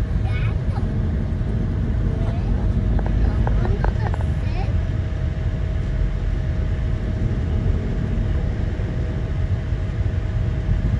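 Road noise heard inside a moving car: a steady low rumble of tyres and engine at road speed, with a faint steady tone running under it.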